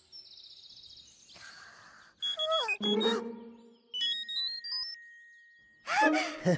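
Cartoon soundtrack of music and comic sound effects: a falling pitched glide a little over two seconds in, then a rising run of short beeping notes about four seconds in.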